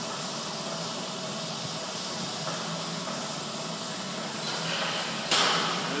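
Steady background hiss of room tone with a faint low hum. About five seconds in comes a short, loud rushing burst of noise.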